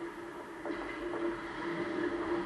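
Ice hockey rink sound during play: a steady hum with the scrape of skates on the ice and a few light knocks.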